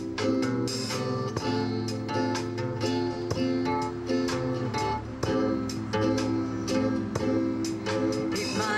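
Acoustic guitars playing an instrumental passage of picked and strummed chords at a steady rhythm, with no singing over them.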